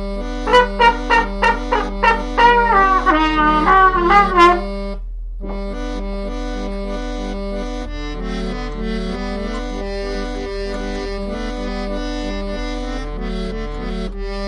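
A brass-sounding lead plays a quick run of short, bending notes over a Bontempi Hit Organ's steady repeating accompaniment. About four and a half seconds in the lead stops, and the organ keeps up its even bass-and-chord pattern to the end.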